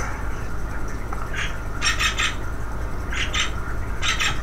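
Mouth sounds of chewing a sticky licorice Mentos: a few short, soft wet clicks in quick little groups, over a steady low hum.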